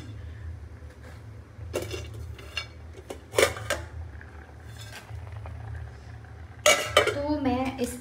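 Stainless steel plate and kitchen utensils clinking and scraping as chopped almonds are gathered by hand: a few scattered knocks and clinks, the loudest about three and a half seconds in and another near the end, over a steady low hum.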